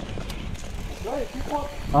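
Mountain bike rolling down a dirt singletrack: tyres rumbling over the ground and the rear hub's freewheel ticking as the bike coasts.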